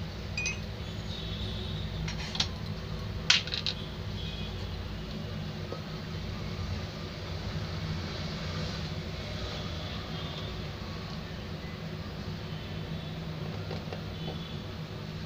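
A few sharp metallic clinks in the first few seconds as a stainless-steel mixer-grinder jar is handled, over a steady low hum.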